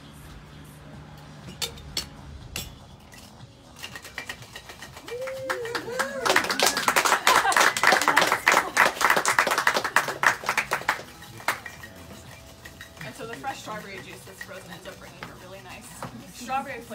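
Metal cocktail shaker shaken hard on frozen strawberry-juice ice cubes, the cubes rattling rapidly inside the tins for about five seconds starting about six seconds in. A few clinks come before the shake.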